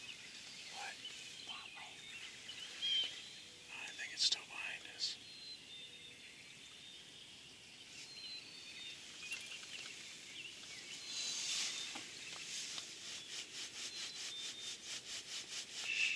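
Small songbirds calling in short chirps over a faint outdoor background, with a few sharper chirps. In the last few seconds one bird gives a rapid, even run of repeated notes, about five a second.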